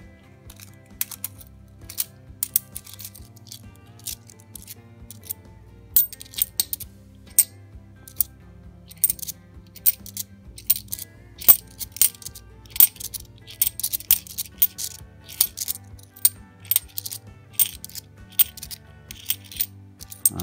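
A stack of 50p coins clicking against one another as they are thumbed through one at a time in the hand: irregular sharp clicks, sparse at first and several a second later on. Quiet background music plays underneath.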